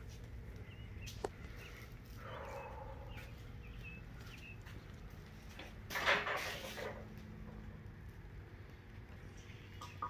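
Low steady hum of room noise with a few faint high chirps. About six seconds in comes a second-long rustle and handling noise as the plastic-wrapped engine is touched; this is the loudest sound.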